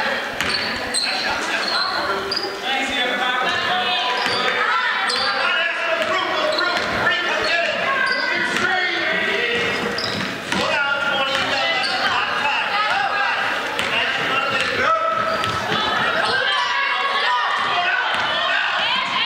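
A basketball being dribbled on a hardwood gym floor, with spectators' voices and shouts echoing around the gym.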